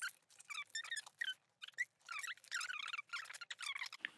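Faint, repeated short squeaks of items rubbing against the leather as they are pushed into a tightly packed leather handbag.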